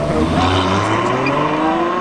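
Ferrari F12berlinetta's V12 engine accelerating hard from a standstill, its pitch rising steadily as it pulls through one gear.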